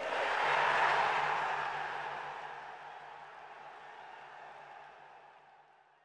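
Intro transition sound effect: a swelling wash of noise that peaks about a second in and then fades slowly away over several seconds, with a faint low hum beneath it.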